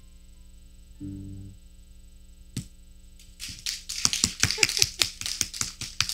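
A final low piano chord on a grand piano, held for about half a second, ending the piece; then, from about halfway through, an audience applauding, growing louder.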